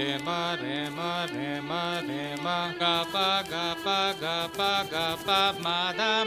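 A song with chant-like singing: short repeated sung phrases over a steady beat, about two notes a second.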